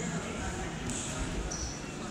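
Indistinct background voices in a large sports hall, with light thuds and shuffling as wrestlers move on the mat.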